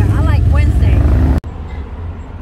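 Loud, steady low rumble of a motor vehicle engine running nearby. It cuts off abruptly a little over halfway through.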